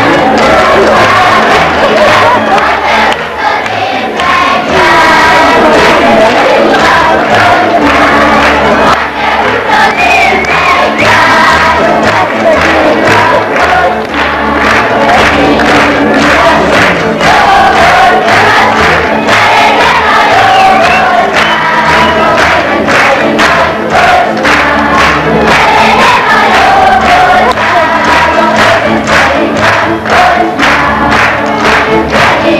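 Folk band of fiddles and double bass playing a dance tune, with many voices singing along and sharp rhythmic strikes running through it.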